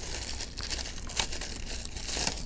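Thin plastic bag crinkling and rustling while a coiled micro USB charging cable is worked out of it by hand, with scattered small crackles.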